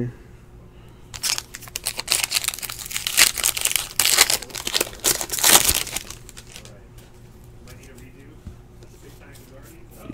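Foil wrapper of a baseball card pack torn open and crinkled by hand: a dense crackling from about a second in until about six seconds in, then it stops.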